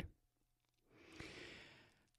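Near silence broken by a woman's single faint breath, about a second in and lasting under a second.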